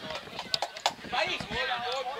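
Footballers' voices calling out across the pitch during play, starting about a second in, with a few sharp knocks just before.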